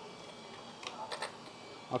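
A few faint, light clicks and small rattles from the plastic body and chassis of a YiKong 4082 RC off-road truck being handled by hand, clustered in the second half.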